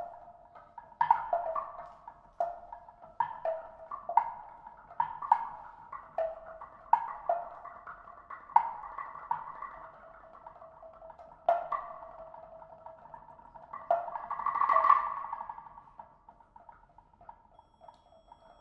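Live percussion ensemble playing sparse, irregular struck notes on tuned mallet percussion, each ringing and fading. About fourteen seconds in, the playing swells into a brief roll that dies away, leaving the last two seconds nearly quiet.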